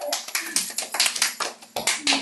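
A small group of people clapping their hands in an uneven, scattered patter of separate claps.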